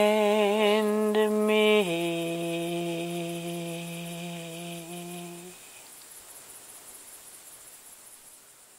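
A woman's unaccompanied voice holding the closing notes of a song. A long note with vibrato steps down to a lower held note, which fades out about five and a half seconds in, leaving only faint hiss.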